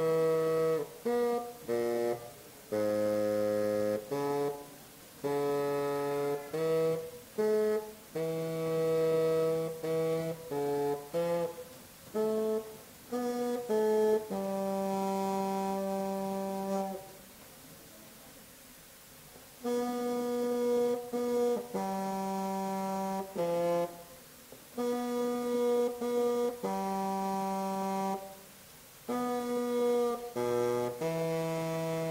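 Solo bassoon playing a melody in one line, mostly short detached notes with a few held ones. About halfway through, a phrase ends on a long held note, followed by a rest of a couple of seconds before the playing resumes.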